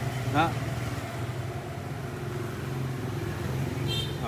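Zenoah GE2KC backpack brush cutter's small two-stroke engine idling steadily.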